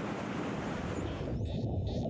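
Steady hiss of breaking ocean surf. About a second in it gives way to a dolphin's high whistle, wavering up and down in pitch over low underwater rumble.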